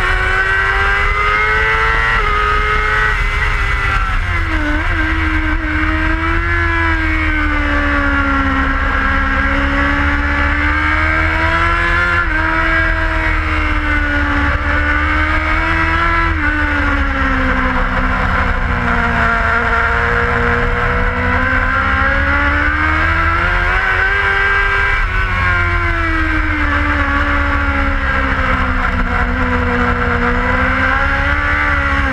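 BMW PR12 production racer's inline-four engine with a Remus full exhaust system, heard onboard at racing speed: the revs rise and fall in long sweeps every few seconds through the corners. A steady low wind rumble on the microphone runs under it.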